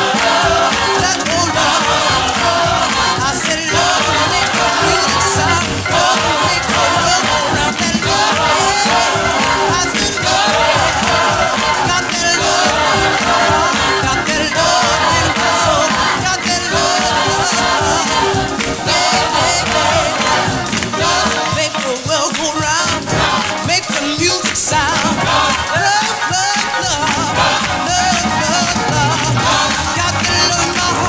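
Gospel choir recording: a mixed choir of sopranos, tenors and basses singing with instrumental accompaniment under a sustained held tone.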